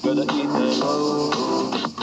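Instrumental pop backing track playing through a portable speaker, in a gap between sung lines.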